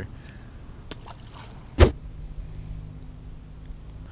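Quiet handling noise with one sharp knock a little under two seconds in, followed by a faint steady low hum.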